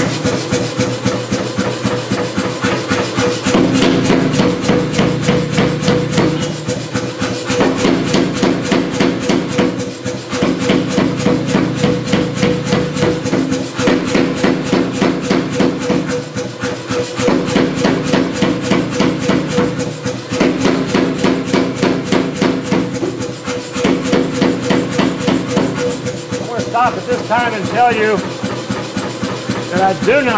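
Say-Mak self-contained air power hammer striking a hot steel bar in fast repeated blows. The blows come in runs of a few seconds with short pauses between, over the steady hum of the hammer's motor.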